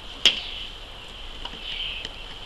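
Steady high-pitched insect chirring, with one sharp click about a quarter second in.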